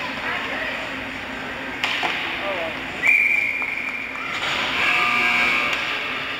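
Ice hockey arena sounds: voices over the rink, a sharp crack about two seconds in, then a shrill, steady whistle blast lasting just over a second, followed by more high shouting.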